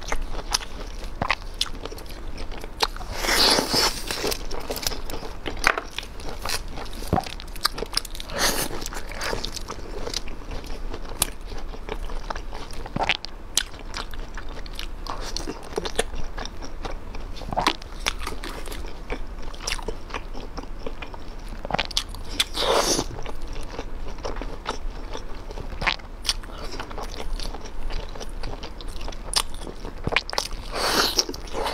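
Close-miked biting and chewing of spicy chili-coated skewered food: crunchy bites and many small wet mouth clicks, with a few louder, longer bites spread through.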